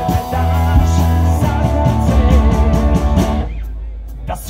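Live rock band playing electric guitars, bass guitar and drum kit. Near the end the band drops out to a held low note before coming back in.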